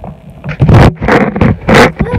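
Scraping and rubbing noise from a phone being handled right against its microphone, in three short loud bursts.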